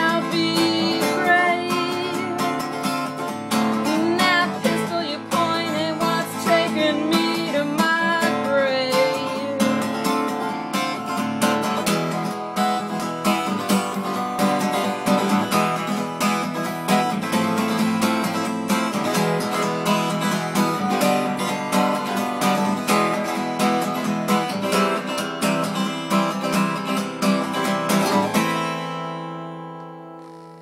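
Acoustic guitar strummed steadily, with a woman's voice singing over the first several seconds. Near the end the song stops on a last chord that rings out and fades.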